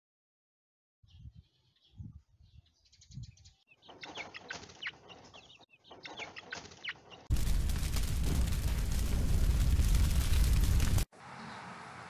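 A chicken clucking in short low calls, then small birds chirping rapidly. Then a loud steady rushing noise for about four seconds that cuts off abruptly, leaving a fainter steady hiss.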